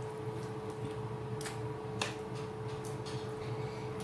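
Two light metallic clicks about one and a half and two seconds in, from metal kitchen tongs placing chicken pieces into a pot of oil, over a steady background hum.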